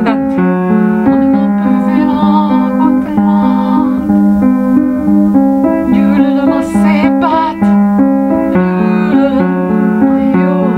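A keyboard playing held chords, with a woman's voice singing over it in places.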